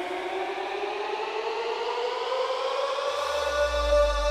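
Electronic dance music build-up: a synth tone rising steadily in pitch with no beat under it, and a deep bass tone coming in about three seconds in.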